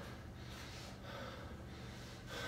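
A winded athlete breathing hard while recovering from intense exercise, heavy breaths coming about once a second.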